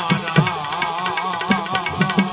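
Live devotional folk music: a wavering melody from harmonium and Indian banjo over tabla strokes, with manjira hand cymbals clinking a steady, quick beat.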